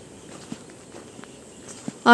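Faint footsteps on leaf-strewn soil, a few soft crunches against a quiet outdoor background.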